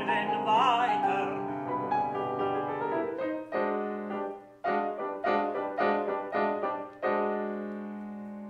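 A baritone ends a sung phrase with vibrato over grand piano in the first second or so. The grand piano then plays alone: a series of struck chords, each fading before the next, with the last one held longer near the end.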